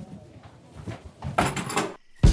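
A door moving in a room, with a short scraping rattle lasting about half a second near the end, over quiet room tone.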